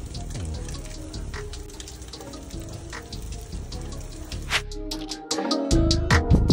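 A trout fillet in foil on a grill, sizzling with a steady hiss and scattered crackles, under background music. The sound drops out briefly near the end and comes back louder.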